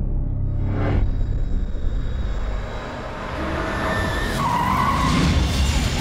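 Trailer sound design: a deep low rumble under music, then a car's tires squealing briefly about four and a half seconds in, with the car noise building toward the end.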